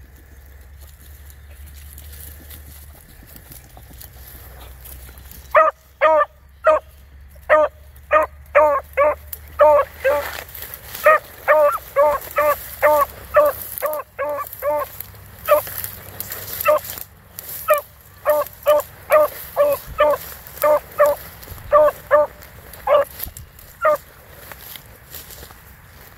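Beagle barking in a long run of short, pitched yelps, about two a second with brief pauses, starting about five seconds in.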